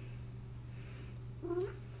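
An elderly domestic cat meowing once, a short call that rises in pitch, about one and a half seconds in, over a steady low hum.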